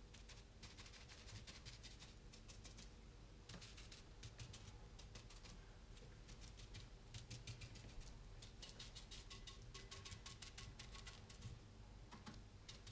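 Faint, quick taps of a paintbrush dabbing and stippling paint onto a fiberglass urn, coming in runs of several a second and busiest in the second half.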